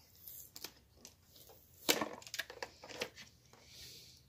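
Clear plastic clamshell packaging crackling and clicking as it is handled and opened. There is one sharp crack about two seconds in and a run of smaller clicks after it.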